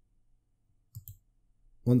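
Two quick computer mouse-button clicks about a second in, against near silence.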